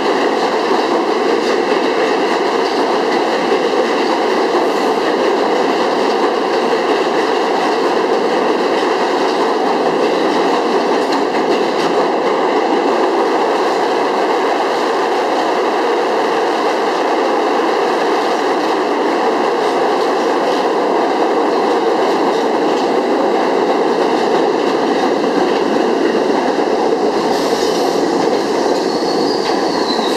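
New York City Subway trains running through the station: a steady, loud rolling rumble of steel wheels on rail that holds throughout as cars pass along the platform. Near the end comes a brief high wheel squeal.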